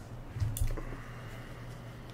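One short click with a low thump about half a second in, from playing cards and small objects being handled on a tabletop, over a steady low electrical hum.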